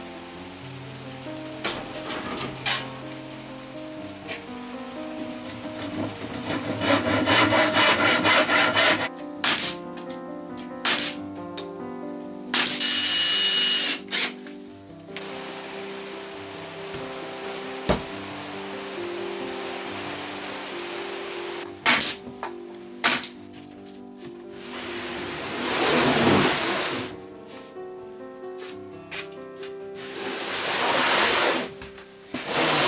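Background music over workshop sounds: a cordless drill runs briefly about halfway through, with scattered knocks of wood on wood as braces are fitted to a timber frame.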